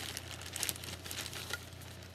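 Thin plastic shopping bag crinkling and rustling as it is handled, in irregular crackles that are loudest in the first second.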